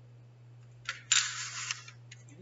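Small letter tiles handled on a letter rack: a light click about a second in, then a short scraping rustle lasting just over half a second as the tiles are slid into place.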